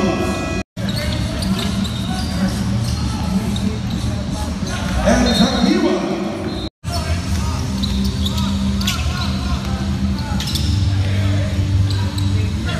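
Basketball game sound: a ball bouncing on a hardwood court amid players' voices. The sound drops out completely twice, briefly, about a second in and again past the middle.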